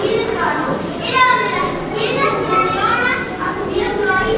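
Many children's voices talking and calling out at once in a large hall, overlapping with no pause.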